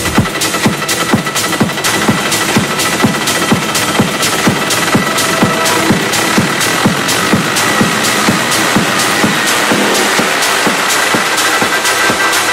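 Minimal techno mix in a breakdown: the kick drum and deep bass are dropped out, leaving a steady, evenly repeating percussion pattern over a held high synth tone.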